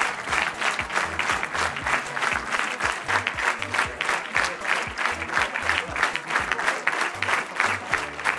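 Large audience applauding, a dense, steady mass of clapping, with music carrying a regular low beat underneath.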